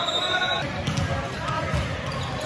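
Indistinct voices of players and spectators in a large gym, with several short dull thuds, likely a ball bouncing on the court floor.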